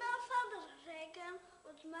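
Only speech: a boy reciting a German poem aloud from memory.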